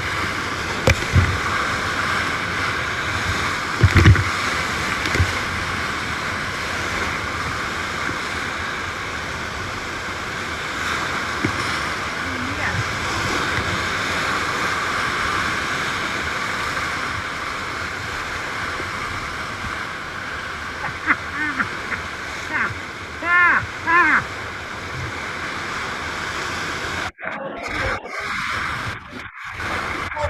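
Whitewater of a big river rapid rushing and crashing over a tule reed raft, heard close from the raft, with a couple of heavy thumps of waves striking early on and a few short shouts about two-thirds of the way through. The water sound cuts off abruptly a few seconds before the end.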